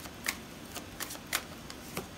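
A deck of tarot cards being shuffled by hand, with a series of short, sharp card clicks about two a second.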